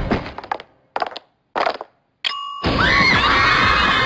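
Cartoon sound effects of shoes tumbling: a fading clatter, two short knocks about a second and a half in, then a brief ding, before music and voices come in loudly near the end.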